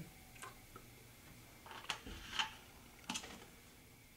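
A few light plastic clicks and taps, about four spread over a few seconds, as a plastic bottle of conductivity solution is capped and set down on a table.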